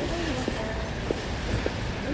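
Heeled boots striding on a concrete sidewalk, a step about every half second, over faint voices of people talking nearby and a low rumble of outdoor street noise.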